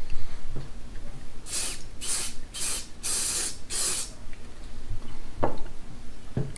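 Aerosol can of CA glue activator sprayed in five short hissing bursts, starting about a second and a half in and about half a second apart.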